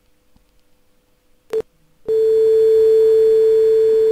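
Steady pure tone from a virtual-lab resonance-tube simulation, sounding as the raised tube's air column comes into resonance with the 320 Hz tuning fork. A short blip about a second and a half in, then the loud tone sets in about two seconds in and holds.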